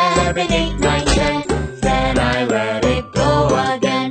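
Children's song music with a bright, tinkling bell-like melody over a steady beat.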